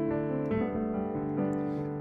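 Keyboard played with a piano sound: held chords over a bass note, moving to a new chord about half a second in and again about a second and a half in.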